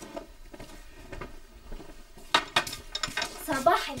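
Plates and cutlery clinking as breakfast dishes are handled, with a few sharper, louder clinks a little past halfway.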